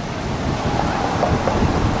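Wind buffeting the microphone, a steady low rumble, over the wash of ocean surf.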